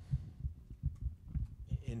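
Microphone handling noise: a run of low, irregular thumps, about five or six a second. A man starts to speak near the end.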